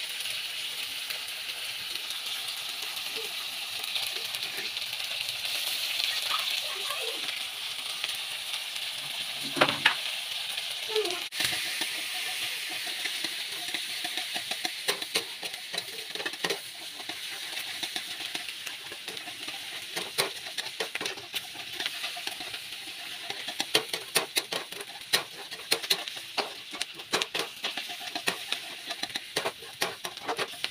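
Sliced onions frying in hot oil in a metal kadai, a steady sizzle, with a metal spatula scraping and clicking against the pan as they are stirred, the clicks coming more often in the second half.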